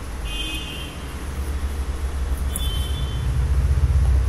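Road traffic: a low vehicle engine rumble that grows louder toward the end, with two short high horn toots, one just after the start and one past two and a half seconds.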